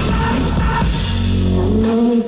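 Live electronic pop band playing through a PA: synthesizers and drum kit over a heavy, steady bass line, with no vocals in this stretch. The bass drops out just before the end.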